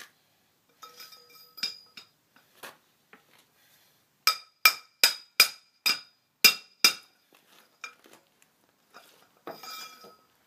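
Hammer blows on the top of a pipe sleeved over an axle shaft, each strike ringing: a few light taps, then about eight hard blows, roughly three a second, starting about four seconds in. They drive a heated axle bearing and backing plate down onto the chilled axle shaft.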